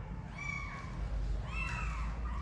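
Kittens meowing: one short, high-pitched mew about half a second in and another near the end.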